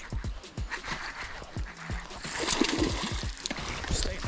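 Water splashing and irregular knocks as a hooked bass thrashes at the surface beside the boat and is lifted aboard.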